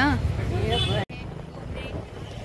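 Street traffic noise: a steady low rumble of vehicle engines with voices. About a second in it breaks off abruptly, then carries on quieter.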